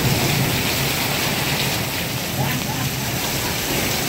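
Heavy wind-driven rain pouring down in a storm, a steady loud wash of noise.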